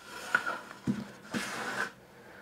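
Wood-veneer cabinet cover of a Kenwood KR-5010 receiver being lifted off and handled: a few light knocks, one about a second in, then a brief scraping rustle.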